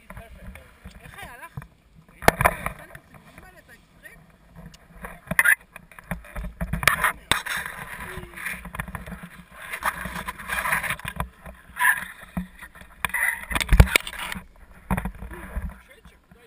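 Wind gusting over the microphone of a harness-mounted camera, with rustling and knocks from the paragliding harness, buckles and lines being handled, in irregular bursts. The loudest knocks come a little over two seconds in and near the end.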